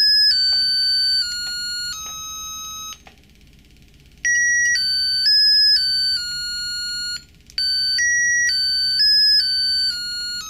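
Arduino-driven piezo buzzer playing buzzy electronic notes as its touch-sensor keys are pressed, one steady tone after another, mostly stepping down in pitch. There are three runs of notes, with a pause about three seconds in and a brief break about seven and a half seconds in.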